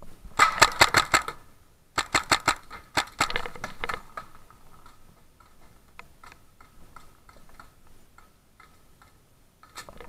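Paintball marker firing in rapid bursts of about eight shots a second: one burst early, a second about two seconds in and a looser third around three to four seconds, then scattered faint pops until another burst begins at the end.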